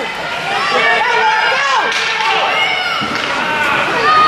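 Hockey spectators shouting and cheering over one another, many voices at once, with a faint knock or two from play on the ice.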